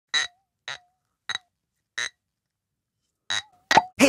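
A series of six short, sharp sound-effect hits, each with a brief pitched tail, separated by dead silence; the first four are evenly spaced and the last two come close together near the end.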